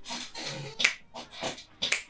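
A rapid run of short sharp clicks or snaps, several a second, some with a low tone under them.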